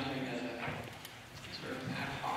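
A man speaking into a handheld microphone.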